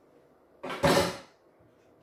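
One brief kitchen clatter a little over half a second in, lasting about half a second, as a kitchen knife is fetched and handled at the counter by the chopping board.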